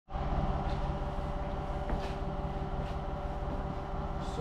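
Steady machine hum with several held tones and a low rumble, with a few faint clicks along the way.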